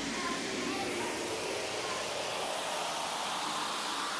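Beatless breakdown in an uptempo clubland dance remix: a hissing wash of sound with no bass or drums, with faint held synth tones that fade out in the first second.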